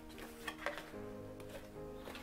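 Soft background music with sustained notes that change about a second in, with a few faint taps and rustles of cardboard packaging being handled.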